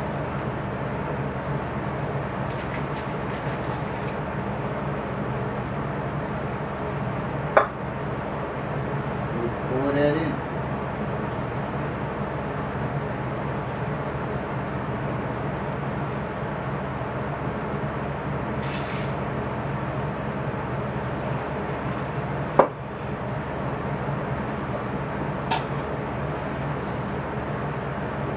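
Two sharp knocks of a metal cocktail shaker against a wooden bar or glass, one about seven and a half seconds in and one about twenty-two seconds in, as the shaker is opened and the drink poured. They sound over a steady low hum, with a brief murmur of voice around ten seconds.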